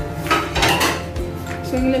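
A brief noisy clatter of a utensil against a pot of vegetables, starting just after the beginning and lasting under a second, over background music with a steady beat.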